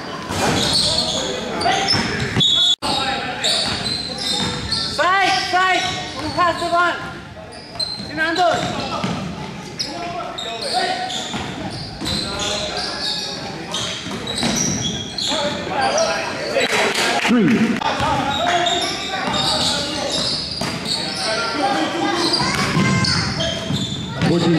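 Live indoor basketball play on a hardwood gym court: the ball bouncing, sneakers squeaking, and players shouting to each other, all echoing in the hall.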